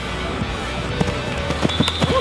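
Background music, with a few short sharp knocks from football players' pads colliding in a contact drill.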